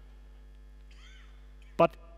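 Pause in an amplified speech: a steady low hum from the sound system, a faint short squeak that rises and falls about a second in, then a man's voice saying "But" near the end.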